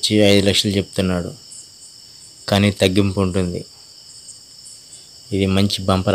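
Insects trilling steadily in the background, several high-pitched tones held without a break, under bursts of a man talking.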